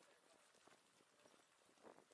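Near silence: faint scattered clicks and ticks from a bicycle riding along a paved bike path, with the loudest click just before the end.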